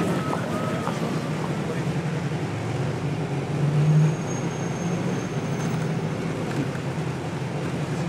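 Interior of a London double-decker bus's upper deck while it drives: a steady low drone of engine and road noise that swells briefly about halfway through, followed by a thin high whistle lasting about a second and a half. A few voices are heard in the first second.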